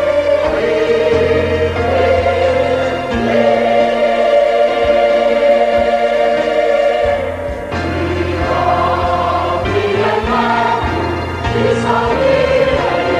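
Mixed church choir of men and women singing an Arabic Easter hymn in sustained, held chords, with a brief lull between phrases a little past the middle.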